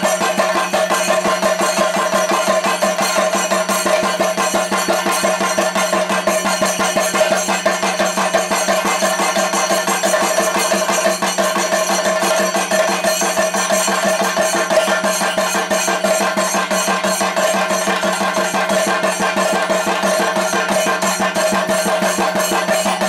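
Chenda drums beaten in a fast, unbroken run of strokes at an even loudness, with a steady held tone beneath them.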